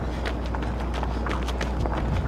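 Running footfalls on a dirt road, about three a second, picked up by a microphone clipped to the runner's shirt, over a steady low rumble.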